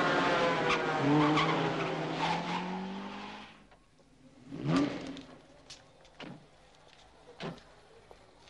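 A motor vehicle going by, its engine note falling steadily and fading out about three and a half seconds in. Then comes a brief squeal and a few light knocks.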